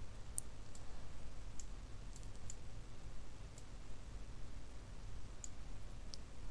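Several faint, scattered computer mouse clicks over a low steady hum, from working a node graph on screen.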